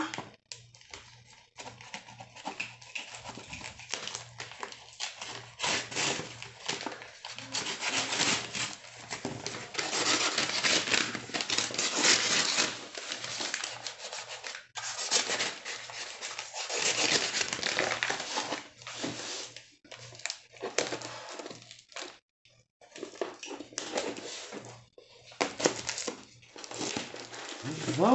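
Brown paper and cardboard packaging of a mailed parcel being torn open and crinkled by hand, in irregular runs of ripping and rustling with short pauses.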